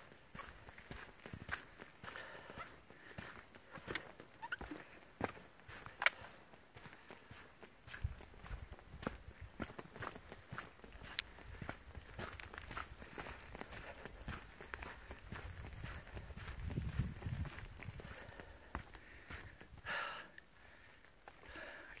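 Footsteps of a hiker walking at a steady pace on a wet, muddy dirt trail, faint and irregular. A low rumble runs under the steps through the middle stretch.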